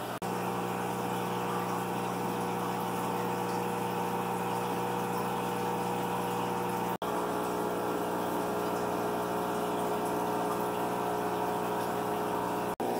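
Aquarium air pump running with a steady electric hum, and water bubbling where the air stones break the surface of the fish tub. There is a very short break in the sound about seven seconds in.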